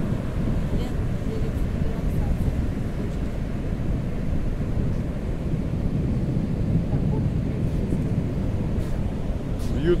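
Ocean surf breaking on a sandy beach, a steady low rumble of waves with wind buffeting the microphone.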